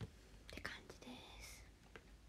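A woman whispering faintly, with a few soft clicks.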